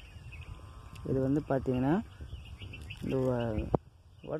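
A man speaking in two short phrases, with a single sharp click near the end.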